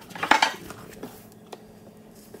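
A wooden board set down on top of a plastic storage case inside a wooden rack frame: a quick cluster of knocks and clatter about half a second in, then a few faint taps.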